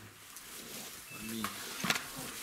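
Shuffling of men sitting down at a table on a bench, with a short low grunt-like sound and a sharp knock near the end.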